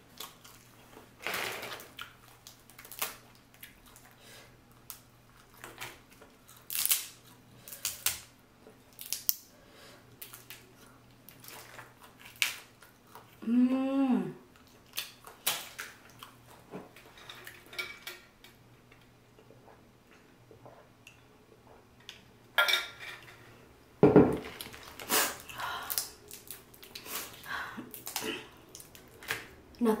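Boiled crawfish being peeled by hand: shells cracking and snapping in sharp, irregular clicks, with a louder run of cracks about three-quarters of the way through. A short hummed "mm" comes about halfway through.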